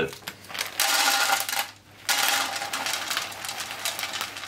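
Plastic packet of hazelnuts crinkling, then hazelnuts pouring out and rattling into a plastic kitchen-scale bowl, in two stretches of dense clattering.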